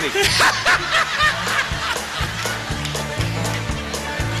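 A band vamps a steady country beat under the act, its bass line repeating with regular drum hits. Laughter and snickering sound over the music in the first second or so.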